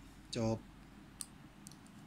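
Two faint, short clicks from a Browning F123 spring-assisted folding knife being handled, a little over a second in and again about half a second later.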